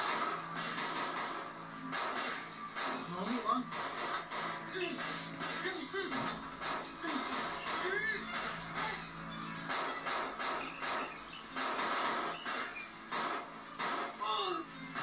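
Action-drama background music with a steady percussive beat, heard through a television's speaker, with a few short voice-like cries mixed in.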